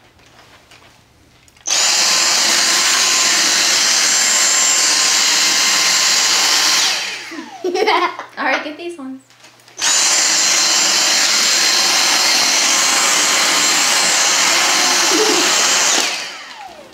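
Dyson DC59 Motorhead cordless stick vacuum running on carpet through its motorized floor head: a loud, steady whine with a high tone that switches on abruptly about two seconds in. It winds down about seven seconds in when the trigger is released, then switches on again sharply about ten seconds in.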